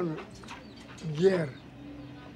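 An elderly man speaking in a language other than English, his voice rising and falling sharply on a loud syllable about a second in.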